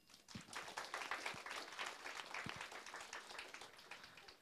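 Audience applauding faintly, a quick patter of many hands clapping that thins out and dies away near the end.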